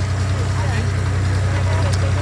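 Steady low drone of the engine pulling the hay wagon, running evenly, with faint voices of other riders over it.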